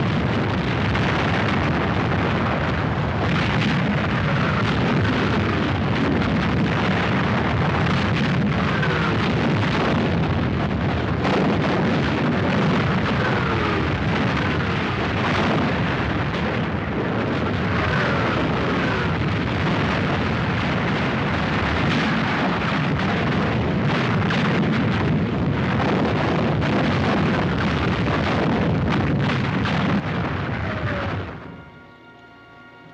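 Massed British artillery barrage: many guns firing and shells bursting in a dense, unbroken din, with a few falling whistles heard in it.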